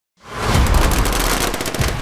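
Rapid automatic gunfire over a deep rumble, cutting in sharply just after the start; the rumble drops away near the end.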